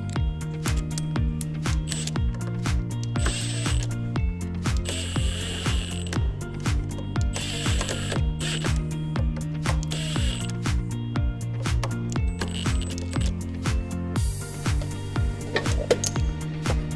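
Cordless impact driver running in the collector bolts on a Comet P40 diaphragm pump in about six short bursts of a second or less each. Background music with a steady beat plays throughout.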